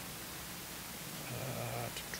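Faint steady hiss, with a short, low murmur from a person about a second and a half in.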